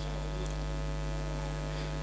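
Steady low electrical mains hum from the microphone and public-address chain.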